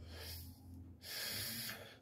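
A man's breath on a close phone microphone: two short, hissy breaths, the second a little less than a second long.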